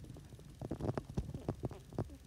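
Two-week-old miniature dachshund puppies grunting and snuffling: a quick, irregular run of short, low sounds.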